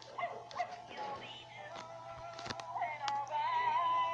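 A Gemmy animated Christmas dog toy playing its song through a small speaker: a synthesized singing voice with music, and a few sharp clicks along the way.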